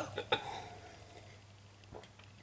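A man sipping beer from a glass: a couple of short sounds about a third of a second in, then faint room tone.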